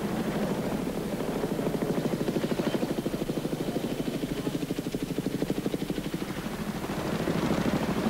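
Helicopter rotor chopping with a fast, even beat, the engine and rotor noise steady throughout.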